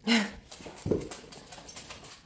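A dog giving one short, loud vocal sound, followed by a soft thump about a second in and scattered light clicks and taps.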